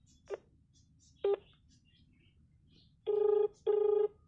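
Smartphone on loudspeaker placing a call: two short beeps, then near the end the ringback tone's double ring, two tones about half a second each with a short gap between.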